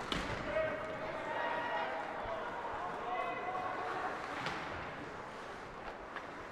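Ice hockey rink sounds during play: indistinct voices of players and spectators echoing in the arena, with a few sharp knocks of puck and sticks on the ice and boards.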